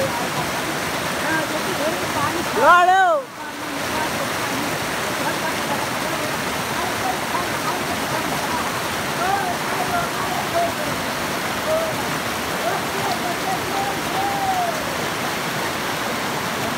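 Fast, shallow mountain river rushing over rocks: a steady, even rush of white water. A person's brief shout rises above it about three seconds in, and faint voices come through later.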